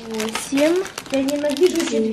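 Speech: voices talking at close range, with no other sound standing out.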